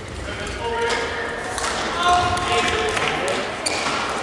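Badminton rally in a large hall: rackets strike the shuttlecock with a few sharp cracks, and court shoes squeak in short, high pitched bursts on the court mat as the players move.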